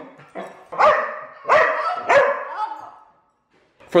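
Pet dog barking excitedly, three sharp barks in quick succession.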